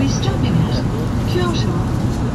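Steady running rumble heard inside a Shinkansen bullet train car in motion, under the train's recorded English announcement over the public-address speakers.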